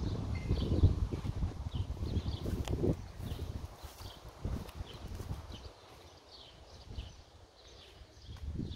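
Low rumble and irregular knocks from the handheld phone moving, loudest in the first three seconds and then quieter. Small birds chirp faintly throughout.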